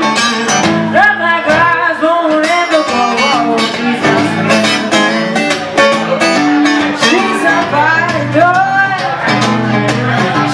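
Live blues shuffle played on guitar, with a woman singing into a microphone over a steady bass line.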